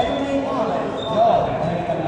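Echoing voices of volleyball players in a sports hall, a ball bouncing once on the hard court floor right at the start, and short high squeaks that fit shoes on the court.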